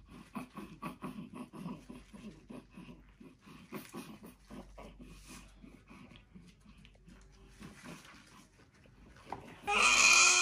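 Newborn baby fussing in short, irregular grunts and whimpers several times a second, then breaking into a loud cry near the end.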